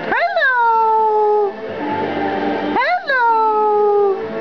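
Galah (rose-breasted cockatoo) giving two long calls about three seconds apart, each rising sharply and then gliding down in pitch, over background music.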